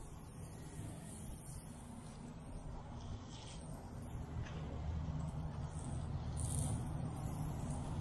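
Pressure washer running with a steady low hum while the wand sprays water onto a concrete sidewalk, growing slightly louder through the stretch. The spray is weak, from a pump low in volume that the operator fears is failing.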